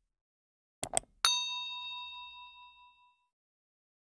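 Subscribe-animation sound effect: a quick double mouse click, then a bright bell ding that rings out and fades over about two seconds.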